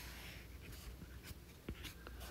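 Faint scratching and tapping of a stylus drawing on a tablet screen, with a few small clicks.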